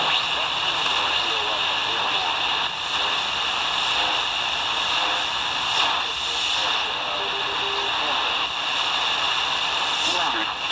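Steady shortwave static and hiss from a Tecsun R9012 portable receiver's speaker on the 80-meter amateur band, with a weak, hard-to-follow AM voice from a ham operator under the noise.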